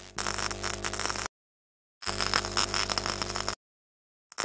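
Two bursts of electronic static with a buzzing hum, a glitch sound effect: the first cuts off about a second in, the second starts about two seconds in and stops abruptly before the end.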